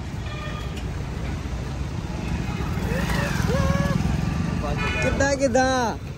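Road traffic passing close by: cars and a motorcycle go past, with engine and tyre rumble that swells in the middle and then eases.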